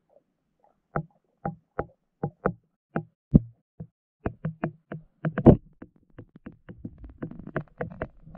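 A GoPro Hero 7 knocking against rocks underwater, picked up by the submerged camera's own microphone. The knocks are separate and sharp, about two a second from about a second in, then come quicker and more jumbled in the second half.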